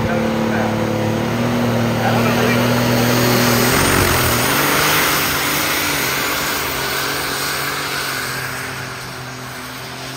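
Alcohol-burning super stock pulling tractor's turbocharged engine running hard under load as it drags the weight-transfer sled. The note is steady at first, its pitch wavers from about four seconds in, and it fades over the last few seconds as the tractor moves away down the track.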